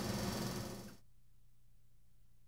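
Room tone: a steady hiss with a low hum, no speech, which cuts off abruptly about a second in, leaving near silence with only a faint hum.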